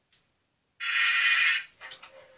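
A short, thin burst of music from a small handheld device's speaker, starting about a second in and stopping after under a second, followed by a click just before the end.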